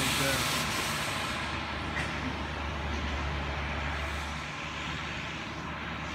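A steady mechanical drone: a low hum under a broad hiss, the upper part of the hiss thinning out after the first second or two.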